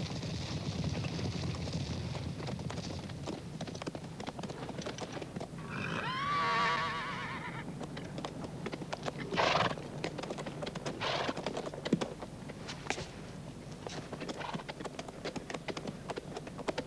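Several horses walking over hard, stony ground, hooves clopping steadily. About six seconds in, a horse gives one long, wavering whinny.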